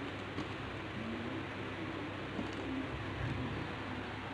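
Faint low bird calls, a few short wavering notes, over a steady background hiss.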